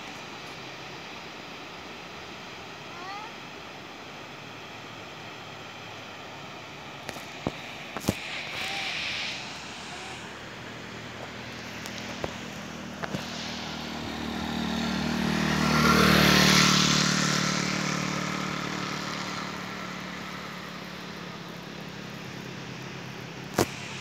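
A motor vehicle passes on the road, its engine and tyre noise swelling to a peak about two-thirds of the way through and then fading away. Underneath is a steady hiss, with a few sharp clicks.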